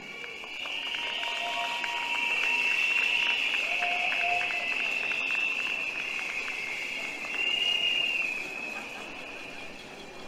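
Rally crowd blowing many shrill whistles at once, with a patter of rapid clicks beneath. It swells up, peaks, rises again briefly and fades away: a noisy show of agreement with the speaker.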